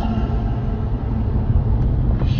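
Steady low rumble of a car on the move, engine and road noise as picked up by a dashcam.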